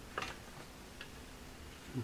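Faint clicks as the amplifier is switched on and handled: one just after the start and a lighter tick about a second in.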